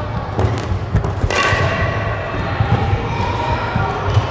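Sports chanbara foam swords smacking together, several sharp strikes in the first second and a half, over feet thudding on a wooden gym floor.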